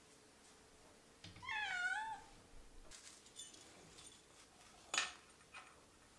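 A domestic cat meowing once, a single wavering call of under a second about one and a half seconds in. A few faint high clicks follow, then one sharp click near the end.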